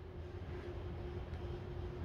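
Quiet, steady background hum of a large exhibition hall, with one faint constant tone running through it.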